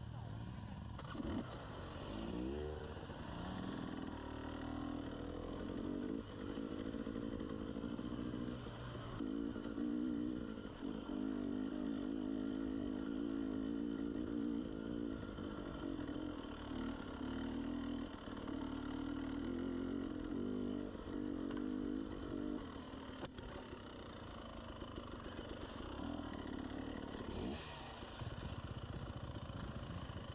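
Enduro dirt bike engine heard up close while riding a trail, its note rising and falling with the throttle. There is a rising rev about two seconds in, and it eases off for a few seconds about three quarters of the way through.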